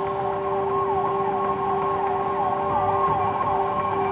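An emergency vehicle siren warbles quickly up and down over a steady, droning music bed.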